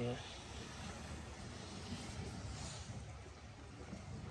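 Faint, steady low rumble with a light hiss: outdoor ambience of water moving in a canal lock chamber.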